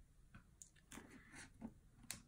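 A few faint small clicks and taps of needle-nose pliers and metal jump rings being handled while fastening charms to an acrylic keychain, in otherwise near silence.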